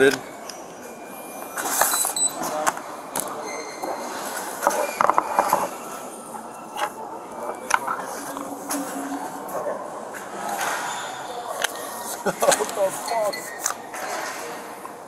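Clicks and knocks of a loaded semi-automatic pistol being handled and unloaded by hand. Sharp, scattered clacks come from the slide and magazine, and from the gun and magazine being set down on the counter.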